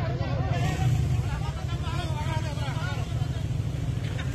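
People's voices talking over a steady low rumble, with the rumble loudest in the first second or so.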